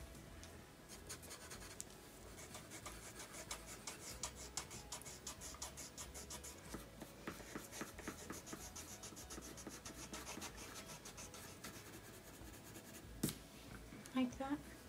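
Colored pencils scratching on paper in many quick, short shading strokes, laying down fur texture on a drawing. A single sharp click sounds near the end.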